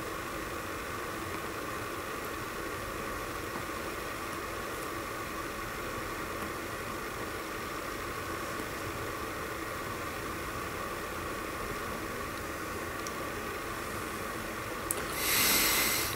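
Steady low hiss with no speech, then a louder breathy exhale about a second before the end as the pipe comes out of the mouth.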